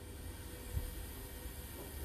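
Faint steady hiss and low rumble of background noise, with one soft bump about three quarters of a second in.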